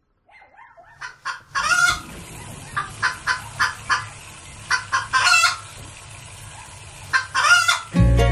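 Chickens clucking: a run of short clucks broken by three louder, drawn-out calls, with faint chick peeps in the first second.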